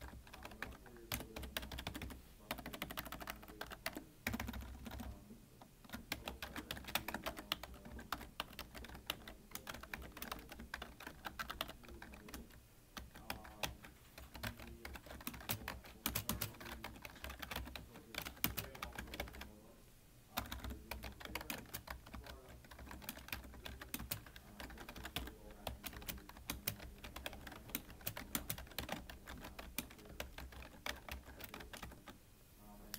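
Fast, continuous typing on a black computer keyboard: a dense, irregular run of key clicks, broken by brief pauses about five, thirteen and twenty seconds in.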